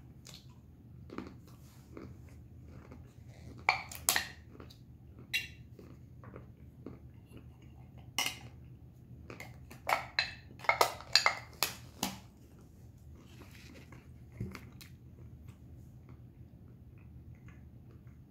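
Peanuts clicking and clattering against an opened metal pull-tab can as they are tipped out into a hand, in scattered sharp clicks with a quick cluster about ten seconds in, along with the crunching and chewing of the peanuts.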